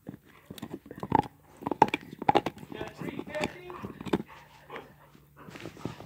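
A pet dog at play, making a quick run of clicks and knocks with short voice-like sounds in the middle.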